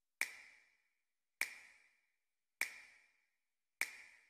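Four sharp clicks, each with a short ringing ping, evenly spaced about 1.2 seconds apart like a slow tick: a produced sound effect in the presentation's intro.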